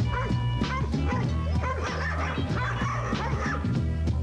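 A dog barking and yipping in a run of high calls over background music with a steady beat.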